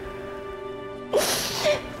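Soft sustained background music, then about a second in two sudden, loud, breathy sobs from a person crying.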